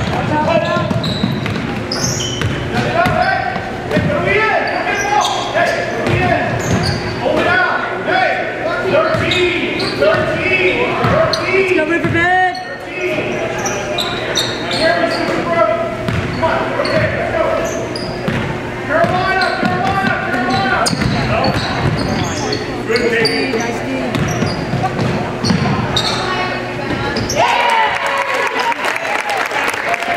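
A basketball being dribbled on a hardwood gym floor, with players and onlookers shouting and calling out, all echoing in the gymnasium. A steady low hum runs underneath and cuts out near the end.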